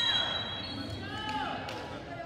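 Players' voices calling out across a large gym, rising and falling, with the tail of a high steady whistle fading out in the first second.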